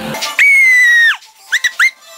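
A loud, high-pitched squeal held for under a second, then two short rising chirps.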